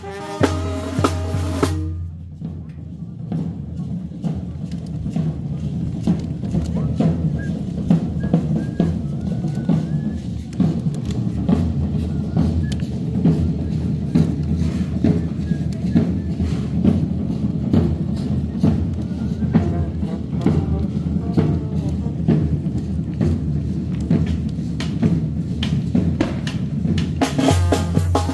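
Tamborazo band's drums, bass drum and snare, playing a steady drum passage with rolls. The brass horns sound briefly at the start and come back in near the end.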